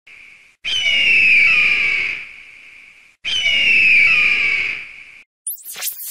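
A bird of prey's scream, used as an eagle call: two long cries, each falling in pitch and lasting about a second and a half. A short swishing sweep follows near the end.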